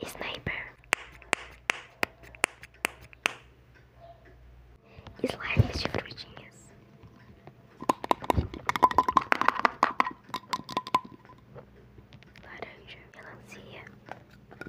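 ASMR whispering close to a microphone, mixed with runs of sharp clicks and taps from fidget toys handled right at the mic.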